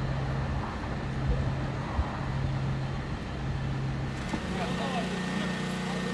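Steady low hum of a vehicle engine running, with people talking in the background. A little over four seconds in, it gives way to a slightly higher, steadier hum.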